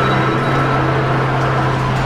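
A car engine running steadily with a constant low hum as the car moves.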